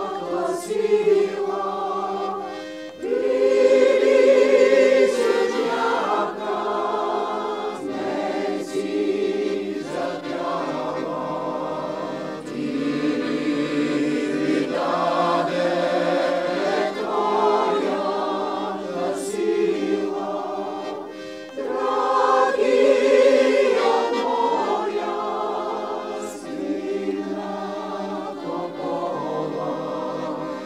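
Mixed choir of women's and men's voices singing a song in several-part harmony, in held chords. The singing drops briefly between phrases about three seconds in and again a little after twenty seconds.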